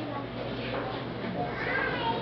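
Indistinct voices of people talking in the room, with a higher, rising voice-like call near the end, over a steady low hum.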